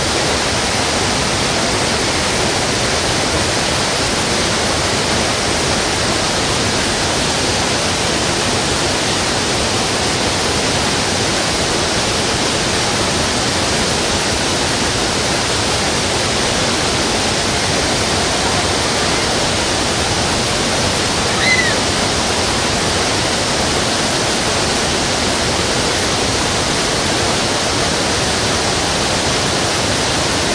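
Steady, loud hiss that stays unchanged throughout, with one short high chirp about two-thirds of the way in.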